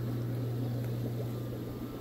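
Steady low hum over a faint hiss from running aquarium equipment, the air pumps and bubbling airlines of a room full of fish tanks.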